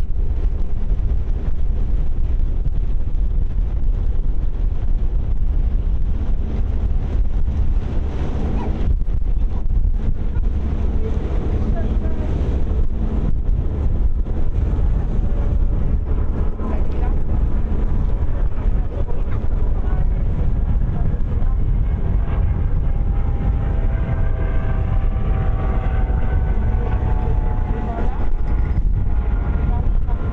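Strong wind buffeting the microphone on the open deck of a moving ferry: a loud, steady low rumble, with the ferry's running noise beneath it. Faint voices of other passengers come through in the second half.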